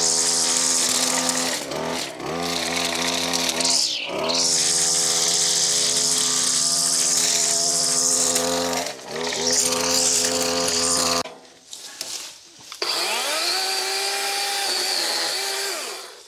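Stihl gas string trimmer running at high throttle, with brief let-offs about two and four seconds in and again near nine seconds. It drops to idle a little past the middle, then revs back up and holds until it falls away at the end.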